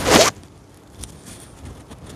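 Saree fabric rustling as the pallu is lifted and handled: one short, loud swish of cloth right at the start, then faint rustling.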